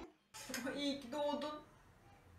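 Speech: a woman's voice for about a second and a half, words not made out, after a brief silence at the start.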